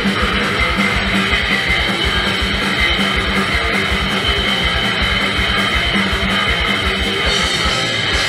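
Live grindcore band playing: heavily distorted electric guitars over drums with fast, dense bass-drum hits, loud and steady throughout.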